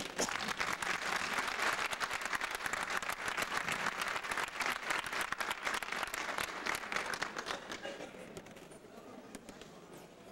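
Audience applauding, dying away over the last couple of seconds.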